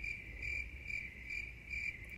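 Faint, high-pitched insect chirping, pulsing about twice a second.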